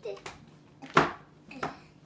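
Short, wordless voice sounds from small children, with one sharp, loud burst about a second in.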